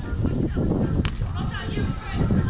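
A hand slapping a beach volleyball: one sharp smack about a second in, over a steady low rumble and voices.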